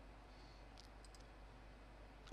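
Near silence with a couple of faint computer-mouse clicks a little under a second in.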